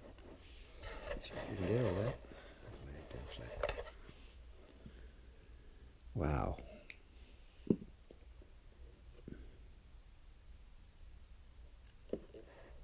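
A man's wordless vocal murmurs, one about a second or two in and a louder one about six seconds in, with a few sharp clicks from the clear plastic blister pack of a toy being handled.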